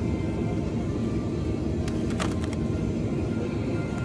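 Steady low rumble of store ambience under background music, with a few sharp clicks about two seconds in as a plastic-wrapped meat tray is handled.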